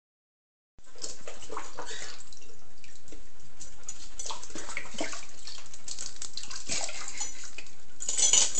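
A Doberman puppy lapping and splashing water in a plastic bucket: a quick, irregular run of wet splashes that starts about a second in.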